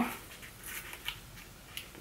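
Faint rustling of a small cardboard brush package being handled, with a few soft ticks from the packaging and its sticker seal.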